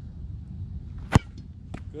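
A cleated foot kicks an American football off a kicking holder: one sharp, loud pop of boot on ball about a second in, followed by a much fainter tick. The kick is well struck, with the power and rotation the kicker is after.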